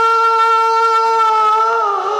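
A singer's voice holding one long, steady high note of a sung Punjabi Sufi kalam, bending slightly down near the end.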